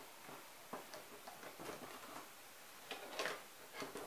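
Quiet room with a few faint, irregular light clicks and small knocks, the most noticeable just after three seconds in.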